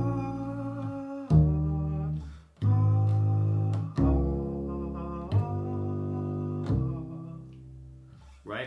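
A man singing a melody in long held notes while plucking one bass root under each note on an upright double bass, a new plucked note about every second and a bit. The sound dies away near the end.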